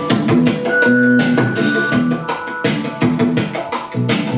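A dance track with a steady drum beat playing through a MiniRig portable speaker, fed by wire from the DJ app.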